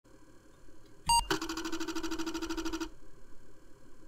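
A short electronic beep about a second in, then a buzzing tone with a fast, even rattle in it that lasts about a second and a half and stops abruptly.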